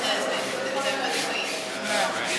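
Indistinct chatter of several people in a large, echoing room, with a light rubbing noise of hands working wood.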